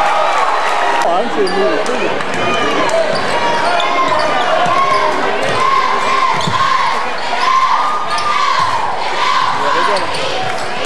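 Basketball game on a hardwood gym floor: a ball being dribbled and sneakers squeaking in short chirps again and again, over a steady murmur of crowd voices.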